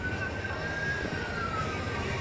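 An emergency vehicle siren wailing: one slow rise in pitch that peaks about a second in and then falls away, over a low rumble.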